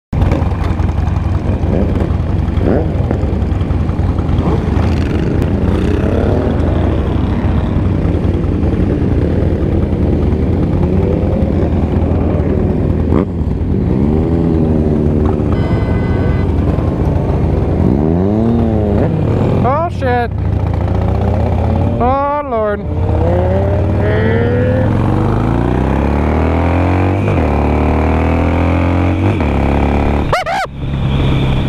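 A Harley-Davidson Nightster's 1200 cc V-twin running steadily among a group of motorcycles, while other bikes rev in rising and falling sweeps, the sharpest about two-thirds of the way through. Near the end the engine pulls away, its pitch stepping up through the gears.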